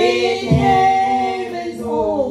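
A women's church choir singing a cappella, several voices together holding long notes.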